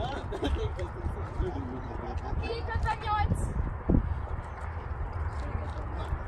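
Speech: a raffle number called out ("5-8!") among people talking, over a steady low rumble.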